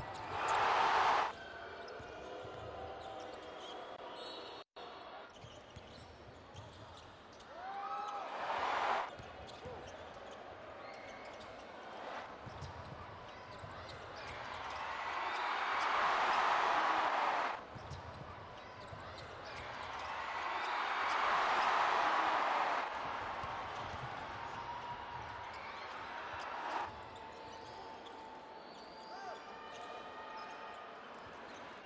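Live basketball game sound in an arena: the ball dribbling on the hardwood court over steady crowd noise, which swells into loud cheering several times, briefly at the start, again about eight seconds in, and in two longer surges around the middle.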